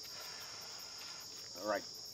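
Night insects chirring in a steady, high, continuous chorus, with a faint regular pulsing above it. A man says one short word near the end.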